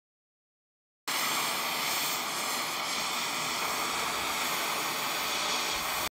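Gas cutting torch hissing steadily on scrap iron, starting abruptly about a second in.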